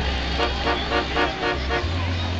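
A vehicle horn tooting a quick run of short notes, about five a second, starting about half a second in and stopping just before the end, over a low steady engine rumble.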